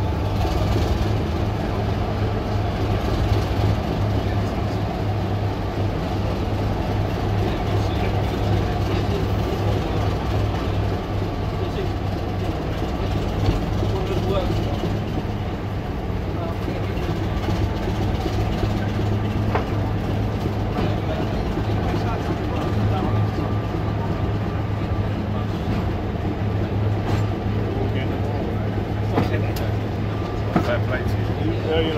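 Class 25 diesel locomotive D7612's Sulzer engine idling steadily at the station, a continuous low hum.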